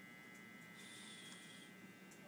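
Near silence: room tone with a faint steady electrical hum, and a soft brief hiss about a second in.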